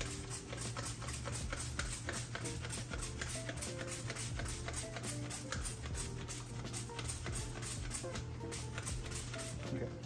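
Background music with a steady, quick beat.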